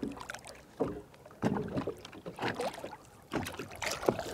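Lake water splashing and sloshing around a hand as a smallmouth bass is released over the side of a boat, in a few irregular surges.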